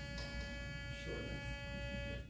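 A steady electronic buzz held at one pitch, rich in overtones, lasting a little over two seconds and then cutting off.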